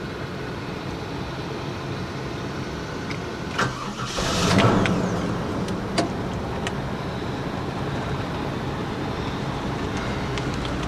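1996 Buick Roadmaster wagon's 5.7-litre LT1 V8 starting about four seconds in, with a brief rev flare that falls away to a steady idle, heard from inside the cabin.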